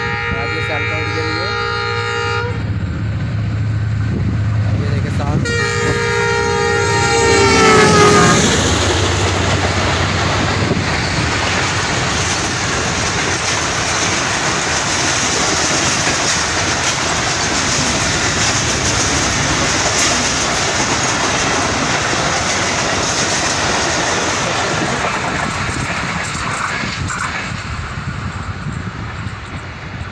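A passenger train's locomotive horn sounds two long blasts, the second dropping in pitch as the locomotive passes. The coaches then roll past with continuous wheel-on-rail noise that fades away near the end.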